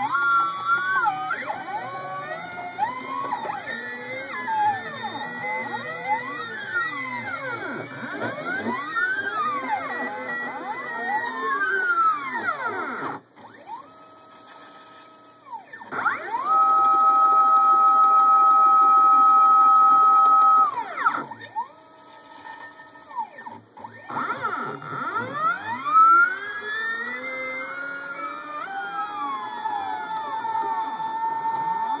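NEMA23 stepper motors of a home-built CNC pen plotter whining as they drive the axes, the pitch sweeping up and down with every change of speed. Just before the middle the whine drops low for a few seconds, then holds a loud steady tone for about four seconds, drops low again, and the sweeping resumes.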